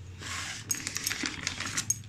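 Frozen breaded chicken patties handled out of a paper-and-plastic wrapper and dropped into a plastic bowl: packaging rustling with several sharp clicks and light chinks, two of them standing out, one about a third of the way in and one near the end.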